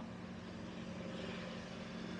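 Steady low hum of a Frezzer Pro 25L 12 V compressor cool box, its compressor running.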